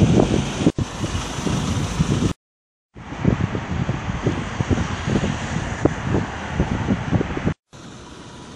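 City street noise recorded on a phone: wind rumbling on the microphone over traffic. It breaks off briefly about two and a half seconds in where one clip cuts to the next.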